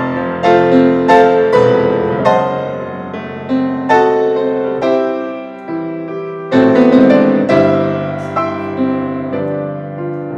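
Two grand pianos playing together in an instrumental duet: chords struck and left to ring and fade, with a louder, fuller chord a little past the middle.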